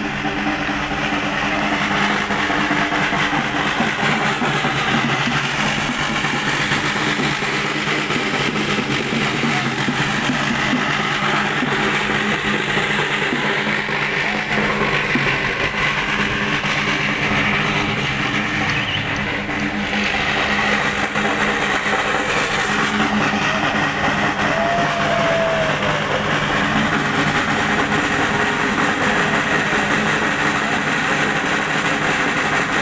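Steady drone of vehicle engines in city traffic, a constant low hum that holds through the whole stretch.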